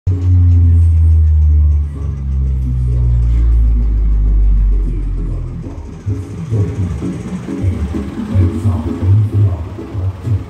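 Loud bass-heavy music from a truck-mounted speaker stack: long held low bass notes for about the first five seconds, then a choppy, rhythmic bass line.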